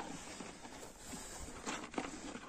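Kangal dog eating dog food from a plastic bucket: faint chewing and muzzle-against-bucket noises, with a few short clicks near the end.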